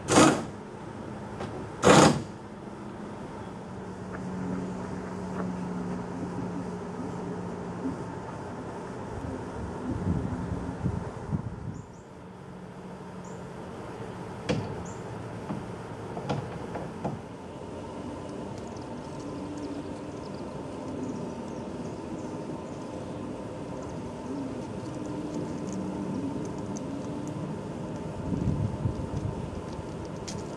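Two loud bumps of handling noise on the camera's microphone in the first two seconds, then a faint, low, steady hum in the background with a few light knocks.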